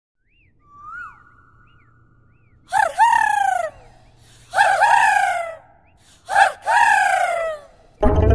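An animal calling loudly three times, about a second and a half apart; each call is a short rising note followed by a longer falling one. A faint thin whistle-like tone comes before the first call.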